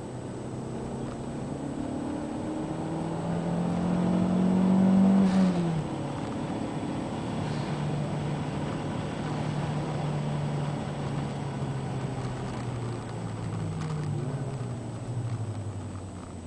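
Toyota MR2 Turbo's turbocharged four-cylinder engine heard from inside the cabin, accelerating hard with a rising note for about five seconds. The pitch then drops sharply at an upshift, and the engine pulls steadily along a straight, climbing again before the note falls near the end as the car slows for a corner.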